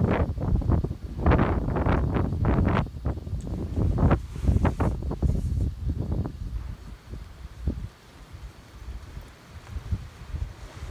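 Strong gusty wind buffeting the microphone, with a large canvas tarp awning flapping and snapping in the gusts. The gusts ease in the last few seconds.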